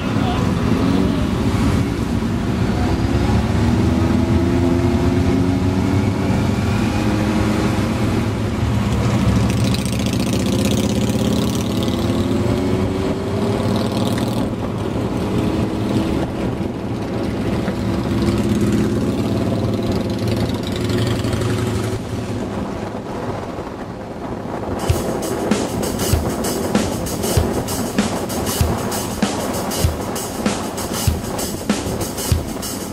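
Motorcycle engines and wind while riding in a group at motorway speed, with engine pitch rising and falling as bikes accelerate. About 25 seconds in, music with a steady beat of roughly one and a half beats a second comes in.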